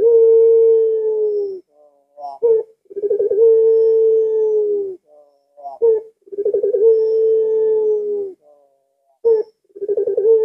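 Puter pelung (domestic ringneck dove) cooing: long calls about every three seconds, each opening with a quick stuttering lead-in and then a long note held for about two seconds that sags slightly at its end. There are three full calls, and a fourth begins near the end.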